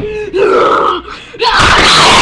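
A child's voice gasping and groaning. About one and a half seconds in, a loud, harsh rush of noise cuts in and holds.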